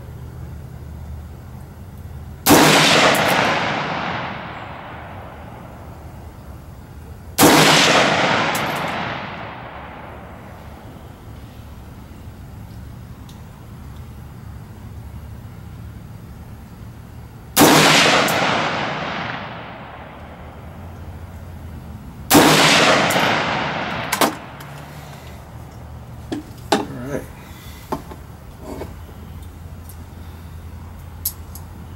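Four single shots from an AR-15-style rifle, spaced several seconds apart, each followed by a long echo fading over about two seconds. A few light clicks and knocks follow the last shot.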